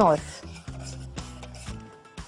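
A spoon stirring and scraping in a pan of milk heating on the stove, in short repeated strokes, over soft background music.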